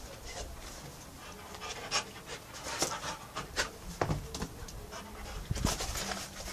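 A pit bull panting hard from the exertion of repeated jumping and hanging training. A few short, sharp sounds come at irregular moments.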